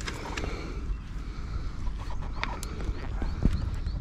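Scattered light knocks and clicks as a landing net and a trout are handled on the floor of an aluminium boat, over a steady low rumble.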